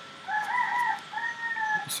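Rooster crowing: a wavering first part followed by a longer held note.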